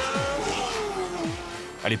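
A supercar's engine driving past, its note falling in pitch and fading as it goes by.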